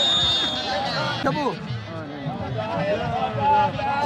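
A referee's whistle blown once, one short steady high blast about three-quarters of a second long, over the voices of the crowd and the match commentator.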